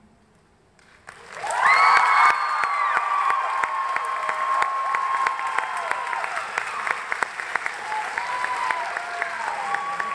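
Audience applause breaking out about a second in after a brief hush, with high whoops and cheers over it at first. The clapping then carries on steadily, with a few more whoops near the end.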